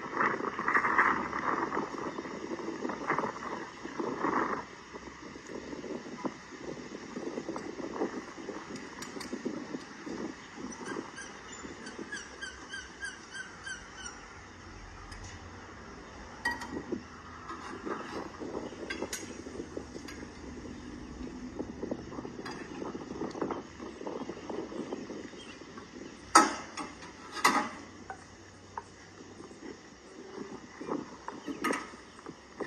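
Outdoor background with a bird chirping quickly for a few seconds, then two sharp knocks about a second apart near the end as a small field cannon is worked on by hand.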